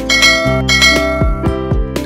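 Background music: a gentle instrumental track with two bright bell-like chime notes over sustained tones and a soft, regular beat.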